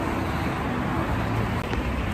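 Street traffic noise: a steady rumble of cars on a city road.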